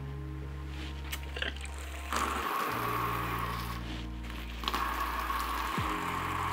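Water jetting from a hand-held shower head fed by a homemade air-pressurised solar shower tank (about one bar of air). It starts about two seconds in and runs strongest for some two and a half seconds, then weaker, over a background music bed.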